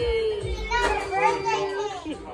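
A young child's voice making two long drawn-out vocal sounds, the first sliding slowly down in pitch, the second held steadier and lower, fading near the end.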